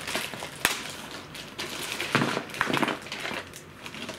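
Clear plastic packaging bag crinkling and rustling as toy pieces are handled and pulled out of it, with one sharp click early on.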